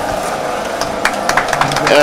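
Electric grape-crushing machine running with a steady hum, with a run of sharp ticks and knocks from about a second in as grape bunches are fed into its auger.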